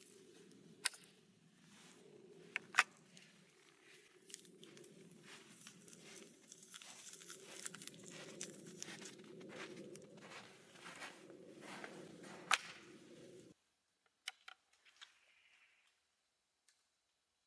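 Metal clicks from the lock of a Hall breech-loading flintlock rifle as its parts are worked, over paper rustling and tearing as a paper cartridge is handled and loaded into the breech. The sound cuts off suddenly near the end, leaving a few faint ticks.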